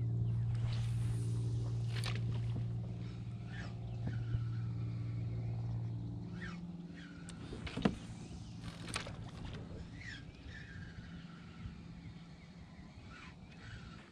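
A steady, low engine hum that fades away about six seconds in, with a few sharp clicks and faint chirps over the quieter second half.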